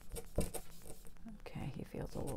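Paper towel rubbed in quick short strokes over a wet oil-toned canvas, wiping paint away to lift out the lights: a dry, scratchy rubbing.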